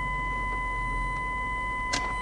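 BMW E53 X5 park distance control (parking sensors) sounding one continuous, unbroken warning tone. It signals an obstacle very close behind the car, about 20 cm away.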